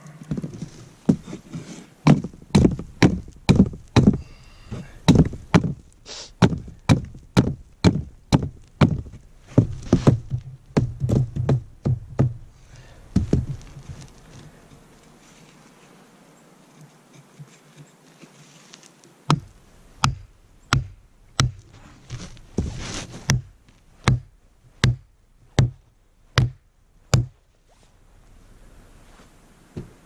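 Upright log posts for a shelter wall being pounded into place: a run of hard wooden knocks about two a second, a pause of several seconds, then a second run of evenly spaced knocks.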